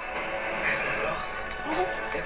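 Film trailer soundtrack playing back: music with a voice speaking over it.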